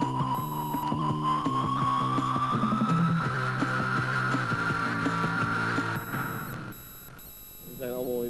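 Electronic jingle music for a TV programme's title sequence: low held chords under a slowly wavering high tone, which stops about six seconds in.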